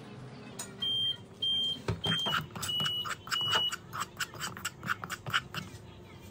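Five short, high electronic beeps in the first half. Then a metal spoon scraping and stirring dry flour and bouillon powder in a frying pan, about three strokes a second.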